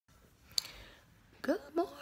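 A single sharp click from the phone being handled as recording starts, followed by two short rising vocal sounds from a woman just before she speaks.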